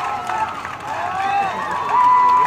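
Spectators' high-pitched voices shouting encouragement to runners in a track race, in short rising-and-falling yells with a long held call at the end.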